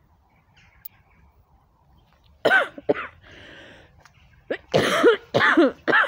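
A person coughing: a pair of coughs about two and a half seconds in, a breath, then a run of four or five harder coughs near the end.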